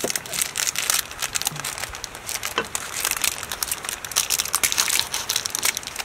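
Wooden pestle crushing and grinding chili paste in a wooden mortar, mixed with the crinkling of a small plastic bag as peanuts are tipped out of it into the mortar. Dense, irregular crackling throughout.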